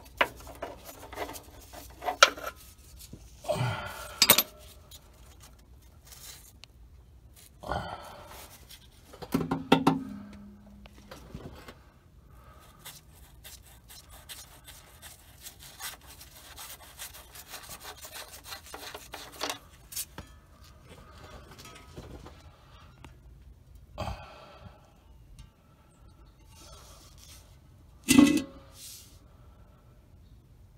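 Hands and a wrench working at an oil pan drain plug: scattered clicks, clinks and rubbing, with a louder metal clank near the end.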